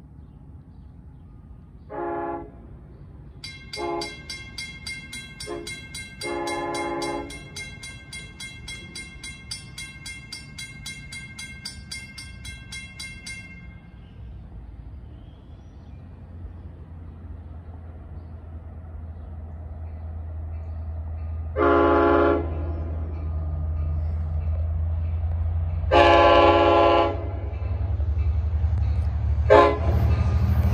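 The Nathan K5LL five-chime horn of an approaching LIRR DE30AC diesel locomotive sounds in blasts. Four short-to-medium blasts come a few seconds in, then three louder ones in the last ten seconds, the longest about a second. Under them the low rumble of the locomotive grows louder as the train nears.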